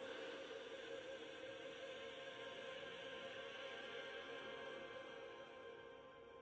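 Faint, steady background music: a sustained, drone-like texture with no clear beat.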